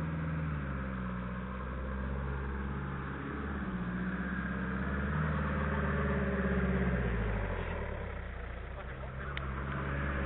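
Off-road 4WD pickup engine working at low revs as the truck crawls up a rutted dirt track, the engine note holding and shifting, then dropping about three quarters of the way through.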